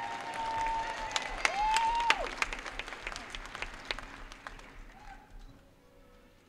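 Auditorium audience clapping, with a couple of shrill high-pitched cheers in the first two seconds; the clapping thins out and fades away about five seconds in.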